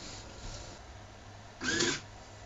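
Small hobby servo motor on a homemade compost-bin robot briefly whirring near the end, as it opens the soil container's lid to release soil over the waste.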